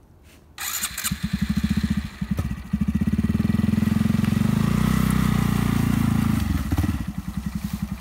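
Honda Grom's 125cc single-cylinder four-stroke engine starting suddenly about half a second in, revving unevenly, then held at high revs for about four seconds before dropping back to a pulsing idle near the end.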